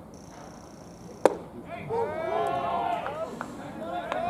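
A baseball pitch smacking into the catcher's mitt: one sharp pop a little over a second in. Several voices then call out over each other.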